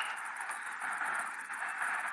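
A steady, even hiss of outdoor background noise with no distinct event in it.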